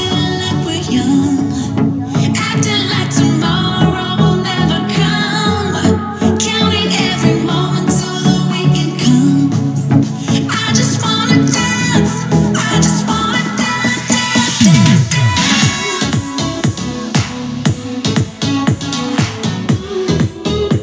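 Upbeat electronic dance-pop track with a steady beat and heavy bass, played through a Yamaha YAS-108 soundbar with no separate subwoofer. A falling bass sweep comes about three-quarters of the way through, followed by choppy, stuttering pulses.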